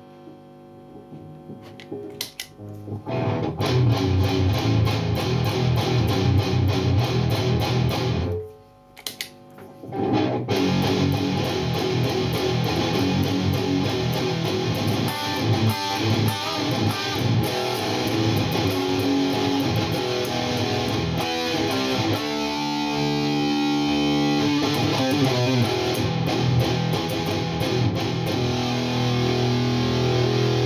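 Seven-string electric guitar played through an MXR Distortion III (M115) pedal into a Mesa Boogie Dual Rectifier and a 2x12 Celestion V30 cabinet, giving heavy distorted riffing. The riffing starts a few seconds in, breaks off briefly about a third of the way through, then carries on, with some chords held and ringing out past the middle.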